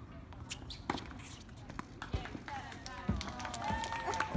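A tennis ball bounced on the hard court, a couple of low thuds in the second half, as a server readies his serve, with sharp knocks and distant voices around it.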